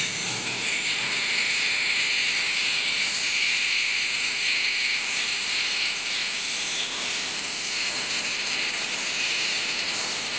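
A steady, high-pitched hiss that stays even throughout, with no speech.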